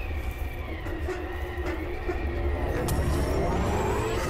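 A steady low rumbling drone with faint held tones from a music video's soundtrack. A sound rises in pitch during the last second.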